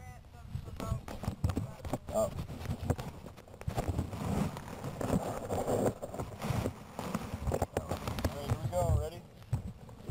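Handling noise from a camera sealed in a balloon payload box as it is picked up and moved: irregular bumps, knocks and rubbing, with voices nearby.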